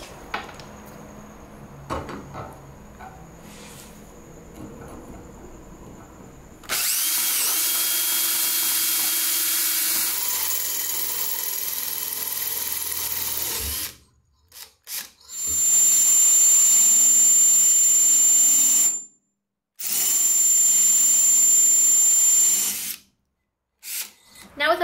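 Cordless drill boring holes through a steel angle bar. After a few seconds of light handling, the drill runs steadily for about seven seconds, gives a few short bursts, then runs twice more with a steady high whine, stopping briefly between.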